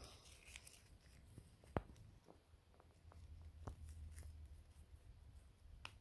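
Near silence with a few faint clicks and rustles of a small plush toy and its tiny backpack being handled; the sharpest click comes just under two seconds in.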